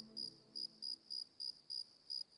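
A cricket chirping steadily, a faint run of short high chirps at about four a second.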